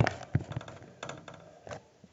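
Several light taps and knocks from the recording tablet being handled and set in place, picked up close on its own microphone.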